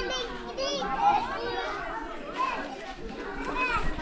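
Young children's voices calling and chattering at play, high-pitched and rising and falling.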